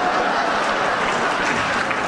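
A large audience applauding: a dense, steady clatter of many hands clapping.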